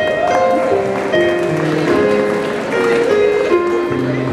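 A choir singing a medley of traditional Japanese songs in sustained, slow-moving notes, accompanied by an electronic keyboard.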